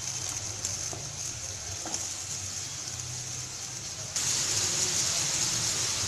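Chopped onions frying in oil in a metal kadai: a steady sizzle that grows louder about four seconds in.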